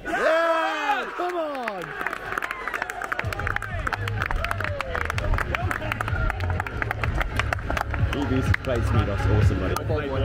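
Cricket players shouting in celebration, then close, fast clapping and applause.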